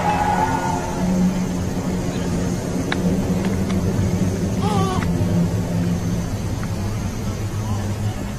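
A steady low droning hum, with a short wavering higher sound about five seconds in.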